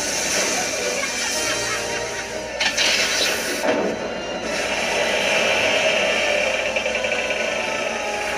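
Anime episode soundtrack playing back: background music mixed with sound effects, with a brief noisy surge about three seconds in.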